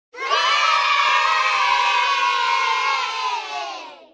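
A crowd of children cheering and shouting together, many voices at once, starting suddenly, holding steady, then dropping slightly in pitch and fading out near the end.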